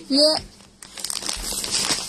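Clear plastic packaging bag crinkling as a packed suit is handled, a dense crackle lasting about a second after a short spoken word.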